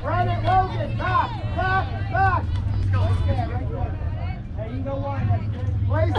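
High children's voices shouting together in a repeated sing-song chant or cheer, over a steady low rumble.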